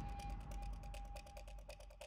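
A fast, even ticking, about fifteen clicks a second, over a faint held tone that fades out near the end, the whole sound slowly dying away.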